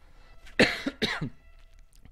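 A man coughs twice in quick succession, starting about half a second in.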